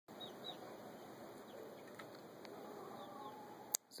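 Faint, scattered high chirps from young chickens, with a low background hum, and a single sharp click near the end.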